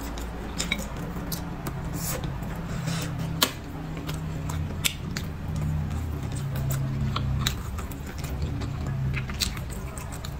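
Wooden chopsticks clicking against a ceramic bowl as food is picked up, a sharp click every second or so, the loudest about three and a half seconds in, with chewing and a low steady hum underneath.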